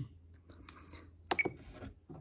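A couple of quick button clicks on an RC transmitter a little over a second in, with a brief high beep, as a menu item is selected on the radio.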